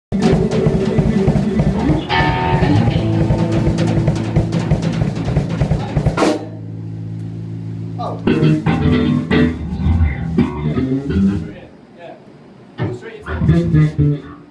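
A rock band playing live: a Gretsch drum kit, bass guitar and electric guitar. The playing hits a sudden accent and a held chord about six seconds in, then carries on briefly and breaks off before the end, where a single spoken "No" is heard.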